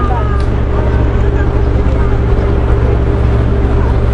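Street traffic with a nearby vehicle engine idling as a steady low hum, and faint voices of passers-by.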